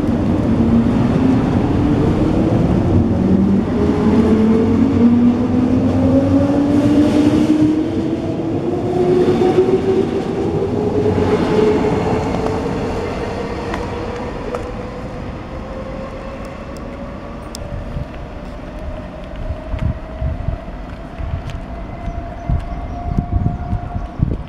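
DB Class 420 S-Bahn electric multiple unit pulling away from the station: the traction motors whine, rising steadily in pitch as the train accelerates, over the rumble of its wheels on the rails. It is loudest in the first half and fades away as the train leaves.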